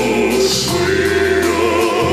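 Operatic singing with wide vibrato over sustained instrumental accompaniment, from a classical-crossover duet for soprano and baritone.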